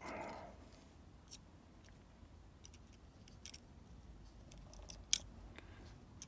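Faint, scattered small metal clicks and scrapes of a steel pick working inside a Medeco lock cylinder's housing as it fishes out the last pins and springs. The sharpest click is about five seconds in.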